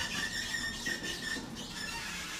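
Hydraulic elevator's car doors sliding open, with a steady high-pitched squeal for just over a second.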